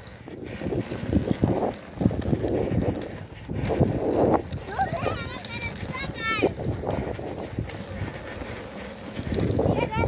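Outdoor movement noise on a phone microphone: uneven rumble and soft knocks from walking and the camera moving along the path. About five seconds in comes a brief run of high, wavering calls.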